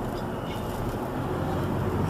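Steady engine and road noise heard from inside a moving car's cabin.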